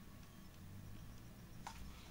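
Near silence: a faint low hum and light ticks from a hard plastic display mask being handled, with one soft click near the end.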